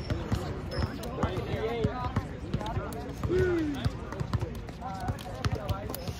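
A basketball bouncing repeatedly on a hard court during a pickup game, with players' voices calling out around it, one longer falling shout a little past the middle.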